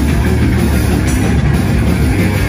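A live band playing loud, dense heavy rock: distorted guitars, with a heavy low end.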